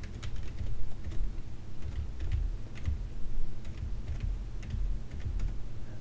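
Typing on a computer keyboard: irregular single keystrokes, about two a second, over a low steady hum.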